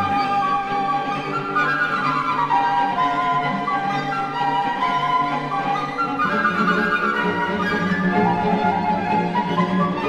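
Two solo flutes with a chamber string orchestra playing a fast classical concerto movement. The lowest bass notes drop out for a few seconds and come back in about six seconds in.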